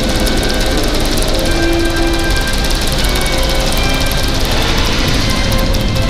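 Saturn V launch soundtrack played loudly through a theatre's speakers: dramatic music over a steady, deep rocket rumble.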